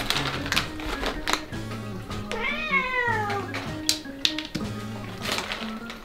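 A cat meows once, a long call falling in pitch, about two and a half seconds in, over steady background music. A few short sharp rustles come from the foil treat pouch being handled overhead.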